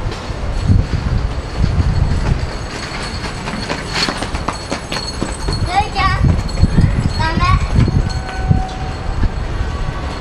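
Street ambience: the voices of passers-by over a constant low rumble of traffic and wind. Two short, high, wavering voices stand out about six and seven and a half seconds in.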